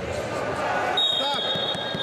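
Electronic scoreboard buzzer sounding a steady high beep from about a second in, as the match clock reaches two minutes: the end of a wrestling period. Under it, the murmur of voices in the hall.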